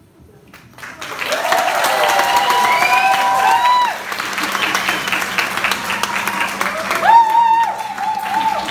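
A theatre audience applauding and cheering, with whoops rising over the clapping, beginning about a second in after a brief lull.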